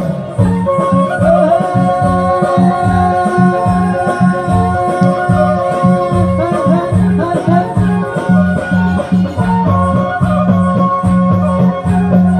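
Loud live Nepali folk song played through a PA loudspeaker: a man sings over a steady drum beat with shaker-like rattling percussion and sustained melody lines.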